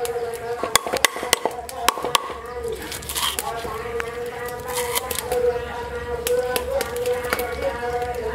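A cleaver chopping on a wooden chopping board: a quick run of sharp knocks through the first two and a half seconds, then a few scattered ones. Underneath runs a steady, slightly wavering pitched drone.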